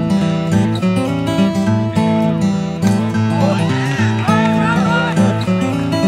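Background music led by acoustic guitar, with steady sustained notes and chord changes.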